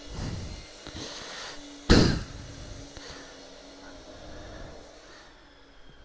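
Handling noise from hands gripping and adjusting a 360 camera on its handlebar mount, rubbing against the microphone, with one loud bump about two seconds in.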